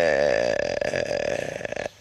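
A man's long, drawn-out hesitation sound, a held 'ehhh' in mid-sentence, its pitch dipping at first and then wavering as it fades into a creaky rasp near the end.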